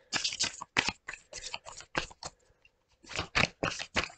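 A deck of tarot cards being shuffled by hand: a run of quick papery flicks and slaps for about two seconds, a short pause, then another burst near the end.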